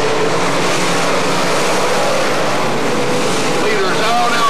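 Several dirt-track sportsman race cars running hard around the track together, a loud, steady blend of engine noise.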